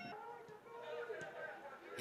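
Faint, distant shouting and chatter of players and spectators at the ground.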